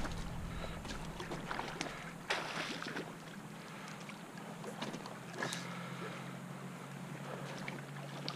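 Creek water and wind noise on the microphone, with several short splashes from a hooked salmon or steelhead thrashing at the surface, the longest about two and a half seconds in.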